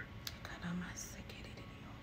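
Faint whispering and breath, with a soft click about a quarter of a second in.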